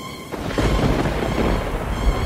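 A sudden crash about a third of a second in, followed by a deep rumble, from a sound-effect transition. It plays over a music bed of held tones.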